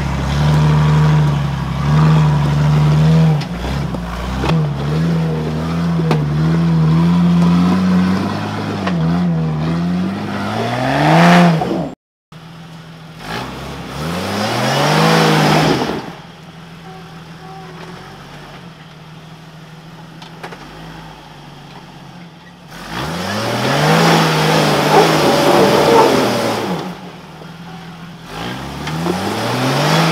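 Jeep TJ engine revving in repeated bursts as it climbs a steep, rutted off-road track, the pitch rising with each push of the throttle. The sound breaks off abruptly about twelve seconds in, then the revving resumes.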